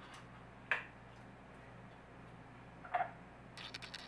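A few light clicks and knocks from handling a plastic chocolate syrup squeeze bottle and a drinking glass: one sharp click under a second in, a duller knock about two seconds later, and a quick run of small ticks near the end, over a faint room hum.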